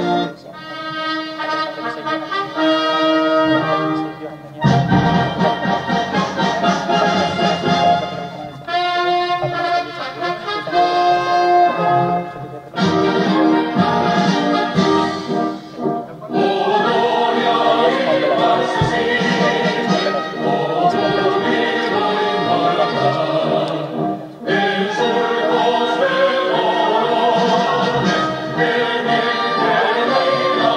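Orchestral anthem with brass and a choir singing, its phrases broken by short breaks every few seconds.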